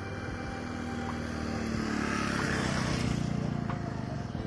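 A motor vehicle passing by, its engine noise building to a peak about three seconds in and then fading.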